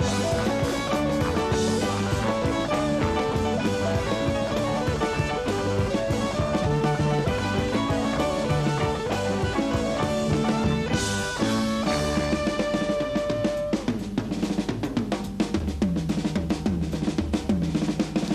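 Live rock band playing, guitar and bass over a drum kit. About three-quarters of the way in, the other instruments drop back and the drummer goes into a short drum solo of fast, dense strokes.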